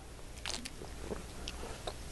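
Low room tone in a pause, with a steady faint hum and a few faint, short clicks and rustles.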